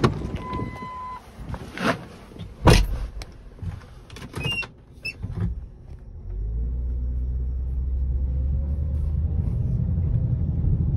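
Car door and cabin sounds: a short beep, knocks with a loud thump about three seconds in, and several clicks. About six seconds in, the 2007 Ford Edge's 3.5-litre V6 starts and settles into a steady idle.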